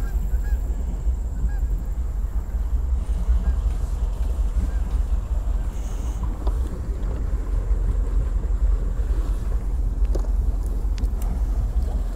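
A steady low rumble with a fluctuating level, and a few faint clicks.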